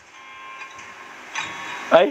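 Faint voices and music from a TV drama episode playing quietly. Just before the end, a man's voice breaks in loudly and suddenly.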